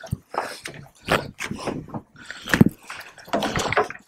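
Irregular splashes and knocks of water at the boatside as a hooked tuna is hand-lined in on the leader, a scattered run of short, sudden sounds.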